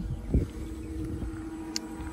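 Handheld camera being moved, with a low thump about a third of a second in and a small click near the end, over a faint steady hum.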